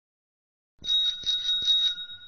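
Bicycle bell sound effect: a quick run of strikes starting about a second in, with two steady ringing tones that last about a second and a half, then stop.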